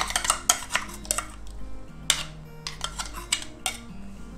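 Metal spoon stirring a thick curd-and-pineapple mixture in an earthenware pot, with irregular sharp scrapes and clinks of the spoon against the clay, closer together in the first second and more spread out later.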